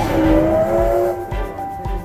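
Steam locomotive whistle: one blast of about a second that slides slightly up in pitch as it starts, over background music that plays throughout.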